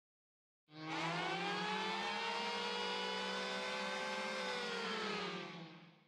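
Voicemod soundboard's "Nuke Alert" sound effect playing: a pitched alarm tone with many harmonics over a low steady hum, starting about a second in. It holds for about four seconds, drifting slightly upward, then falls in pitch and fades out near the end.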